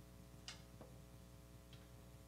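Near silence: room tone with a steady electrical hum and three faint, brief clicks or taps.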